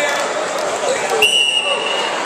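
A referee's whistle: one steady, high-pitched blast lasting under a second, starting a little past halfway, over the chatter of the gym crowd.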